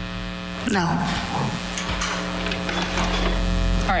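Steady electrical mains hum with a buzzing series of overtones on a courtroom microphone feed. A woman says a short "No" about a second in.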